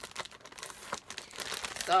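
Plastic packaging bag crinkling and rustling as it is pulled open by hand, with many small sharp crackles.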